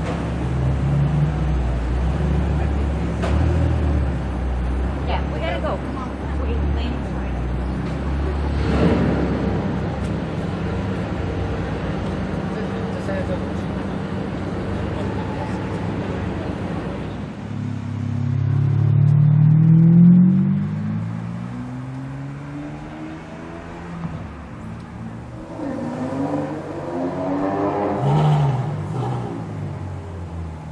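McLaren 720S's twin-turbo V8 running low and steady as the car creeps past. About eighteen seconds in, a supercar engine revs up with a rising note, the loudest moment, then falls away. A second, shorter rev rises near the end.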